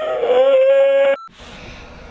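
A person's exaggerated mock-crying wail: one loud, high note that drops in pitch at the start, holds steady for about a second, then cuts off suddenly.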